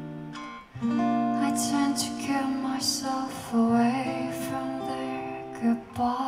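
Slow acoustic guitar accompaniment playing held chords between sung lines of a ballad, with the chord changing about a second in and again midway.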